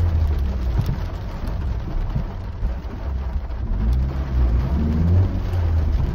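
Interior noise of a car being driven: a steady low engine and road rumble heard from inside the cabin.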